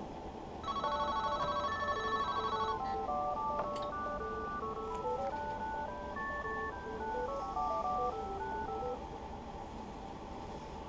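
Cordless phone handset playing an electronic ringtone tune of stepped beeping notes, starting about a second in and stopping shortly before the end.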